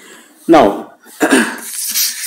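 Sheets of paper rustling as they are handled, a hissy crinkle starting near the end, after a man's short spoken words.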